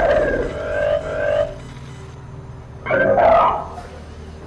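Heavily distorted, radio-filtered voice transmission, a police dispatch call, heard as two short bursts: one of about a second and a half at the start and a shorter one about three seconds in.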